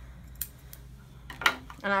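Grooming scissors trimming the long eyelashes and hair around a small dog's eyes: two short, sharp snips, the second, about a second and a half in, much louder.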